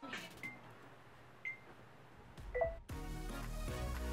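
Edited-in background music breaks off, leaving a quieter stretch with three short high beeps about a second apart. Music with a steady beat comes back in about three seconds in.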